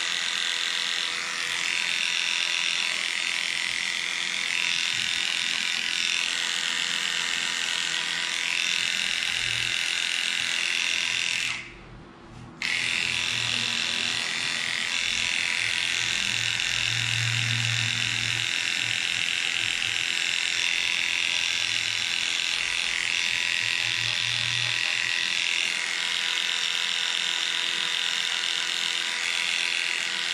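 Heiniger cordless dog clipper running steadily as it trims the fur on a dog's paw pads. It stops for about a second partway through, then runs on.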